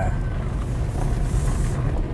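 A car driving slowly along a dirt road: a steady low rumble of engine and tyres.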